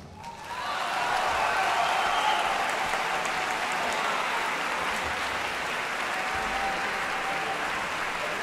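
Concert audience applauding. The applause swells up about half a second in, as the orchestra's final chord dies away, and then holds steady.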